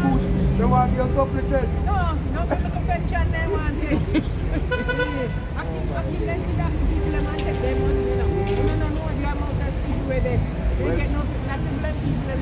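People talking in the open street over a steady rumble of bus and car traffic, with a vehicle horn sounding briefly about five seconds in.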